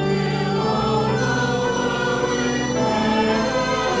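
Church choir and congregation singing a hymn together in long held chords, the harmony changing about three seconds in.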